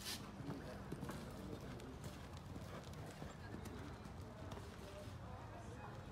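A horse's hooves on the arena's dirt footing: a sharp thud as it lands from a jump just at the start, then hoofbeats as it canters on. Faint voices sit in the background.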